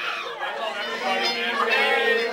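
Karaoke in a bar: a singer's voice through the microphone over a backing track, mixed with crowd chatter.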